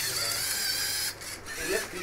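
Small electric motors of a LEGO robot whining at a steady high pitch as it drives, cutting off abruptly about a second in.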